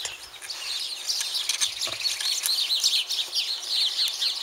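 A busy chorus of small birds chirping: many short, quick, high calls overlapping one another without pause, growing thicker about a second in.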